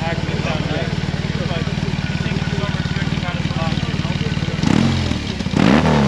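BMW R 18 bagger's boxer-twin engine idling with a steady beat, then blipped twice near the end, the second rev higher and longer.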